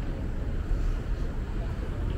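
Steady low rumble of background noise on a moving walkway, with no single clear event.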